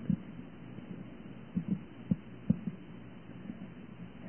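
Faint steady hiss of a dull, narrow-band recording, with a few soft low thumps about halfway through.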